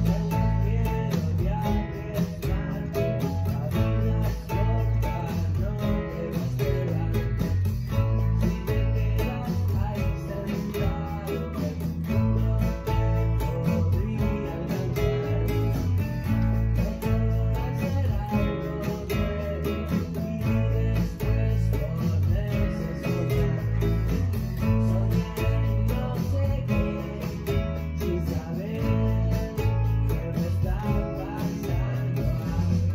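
Classical nylon-string acoustic guitar strummed in a steady, continuous rhythm, playing chords with a full, driving bass.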